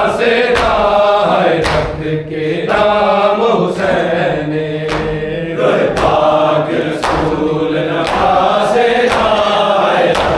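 Men chanting a nauha lament, with chest-beating (matam) strokes of hands on bare chests keeping a beat about once a second.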